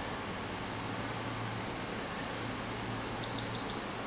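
Two short, high electronic beeps from an interval timer a little over three seconds in, over a steady low room hum.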